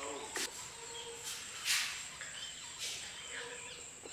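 Steady high-pitched insect drone, with several short rustling noises, the loudest a little before halfway, and a few faint bird chirps.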